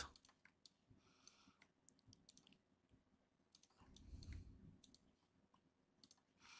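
Faint, scattered computer mouse clicks over near silence, with a soft low swell of sound around four seconds in.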